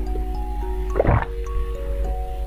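A single wet slurp and gulp of a thick purple jelly drink from a small glass tube, about a second in. Soft background music of slow held notes plays throughout.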